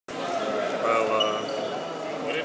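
Indistinct voices in a large, echoing sports hall.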